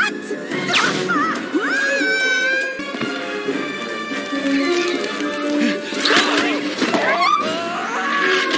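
Animated-film soundtrack: music mixed with cartoon sound effects, several sliding-pitch swoops or squeals and a few sharp whip-like hits.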